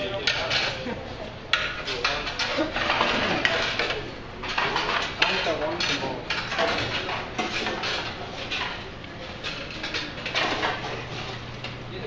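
Busy cafeteria din: many voices chattering at once, mixed with frequent clatter of dishes, trays and cutlery, over a steady low hum.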